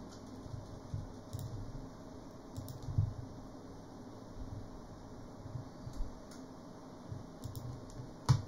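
A few faint, scattered clicks of a computer keyboard and mouse over a low, steady room hum.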